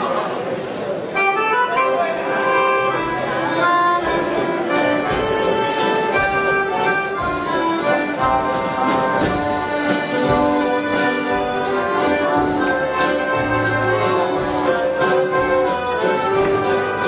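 Live accordion band strikes up a dance tune about a second in: several accordions playing together over a steady drum beat, after a moment of crowd chatter.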